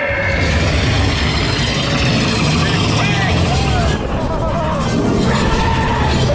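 A ride car moving through a dark show scene: steady, loud rumbling noise, with indistinct voices rising and falling over it in the middle.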